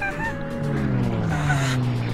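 Cartoon soundtrack: a character's short, honk-like voice sounds at the start and again about one and a half seconds in, over music with slowly falling notes.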